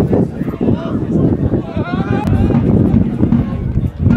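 Players and spectators shouting and calling at a football match, overlapping voices with no clear words and one drawn-out call about two seconds in. A single sharp click comes near the middle.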